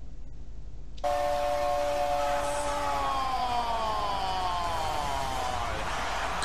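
Football highlight audio that cuts in suddenly about a second in: a steady crowd-like hiss with several held tones sliding slowly downward together.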